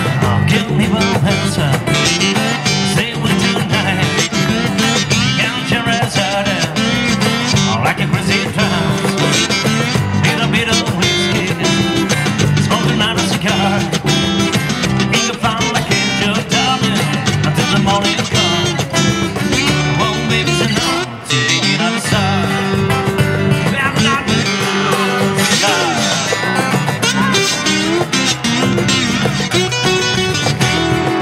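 Live acoustic band playing southern rock: two strummed acoustic guitars over electric bass and cajon. There is a brief drop in the playing about two-thirds of the way through.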